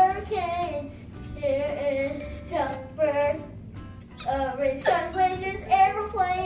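A young girl singing in short, animated phrases, her pitch sliding up and down.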